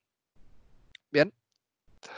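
A man's voice saying one short word about a second in, just after a single small click; the rest is quiet.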